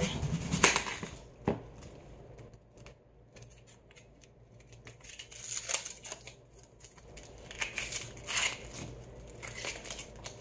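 Dry, papery onion skin being peeled and torn off by hand, crinkling and crackling in short bursts, mostly in the second half.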